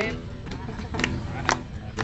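Outdoor background of people talking over recorded music, caught in a break between sung lines, with two sharp clicks about one and one and a half seconds in.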